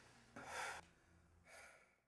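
A person's audible breath in a quiet room: a short, sharp intake of breath about half a second in, and a softer breath near the end.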